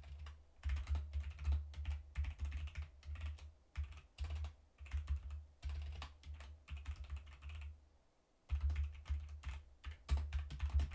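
Typing on a computer keyboard in quick runs of keystrokes, each click carrying a low thud, with a brief pause about eight seconds in.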